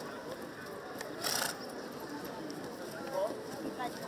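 Indistinct background talk from people standing around, with a short hiss about a second in.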